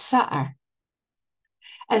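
A woman's lecturing voice ends a sentence, then about a second of dead silence, then a faint breath just before she starts speaking again.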